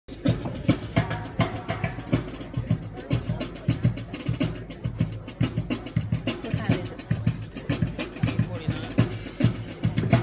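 Military marching band playing on the march: bass and snare drums keep a steady beat of about two strokes a second, with brass, including sousaphones, playing over it.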